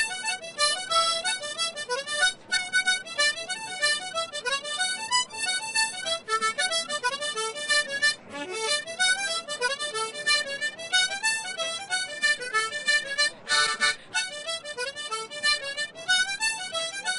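Solo harmonica playing a traditional Irish tune as a quick, unbroken run of notes, with a brief fuller chord-like stretch near the end.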